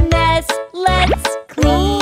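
Children's nursery song: a sung line over a bouncy accompaniment with steady bass notes, and a quick rising cartoon sound effect about a second in.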